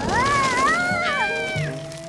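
Cartoon ant character's high, wavering wail of alarm, rising and falling in pitch and breaking off a little before two seconds in, over background music.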